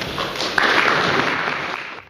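Audience applauding, swelling about half a second in and cut off suddenly at the end.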